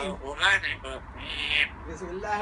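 Grey parrot mumbling speech-like sounds in imitation of Arabic Quranic recitation, with a short breathy hiss near the end.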